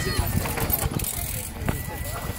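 Mountain bikes rolling over a dry grass-and-dirt track, with scattered clicks and one sharp knock near the end.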